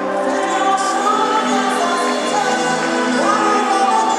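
A woman singing a gospel song into a microphone, backed by a live band, with the sung melody held and gliding between notes over steady accompaniment.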